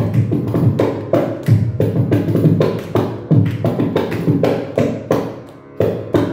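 Mridangam, joined by a kanjira, playing rapid, dense rhythmic strokes with booming low bass strokes, with no voice over them: a percussion solo passage (tani avartanam) of a Carnatic concert. The playing thins and fades briefly about five seconds in, then resumes with a loud stroke near the end.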